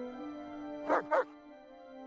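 Two short barks from huskies in quick succession, about a second in, over sustained orchestral film music.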